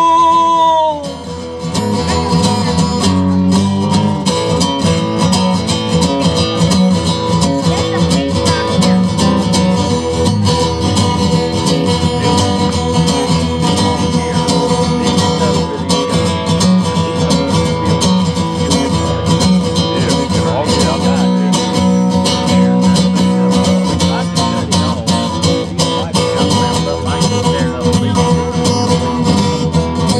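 Live country music: a steel-string acoustic guitar played through an instrumental break, steady and busy throughout. A held sung note dies away about a second in.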